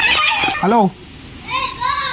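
Only voices: a man's voice in the first second, then a higher child's voice near the end.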